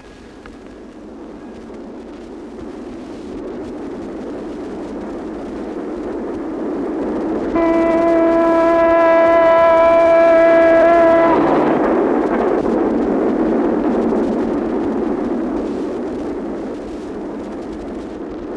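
A train approaching and passing, its rumble swelling to a peak and then slowly fading. Midway it blows a steady whistle for about four seconds, which cuts off sharply as the rumble peaks.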